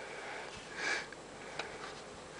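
A person sniffing once through the nose, a short breathy sound just before the one-second mark, followed by a faint click.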